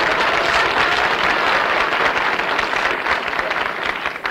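Studio audience laughing and applauding, easing off slightly near the end.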